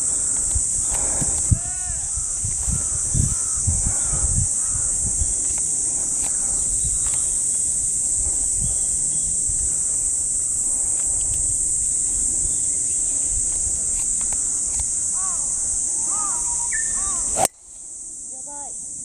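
Steady high-pitched drone of insects in summer, with scattered bird chirps. Near the end comes one sharp crack: a driver striking a golf ball off the tee.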